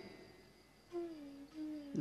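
Near silence for about the first second, then a faint, low humming tone that is held and sags slightly in pitch.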